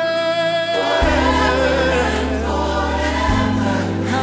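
Contemporary gospel choir singing over a band, with a deep bass line coming in about a second in.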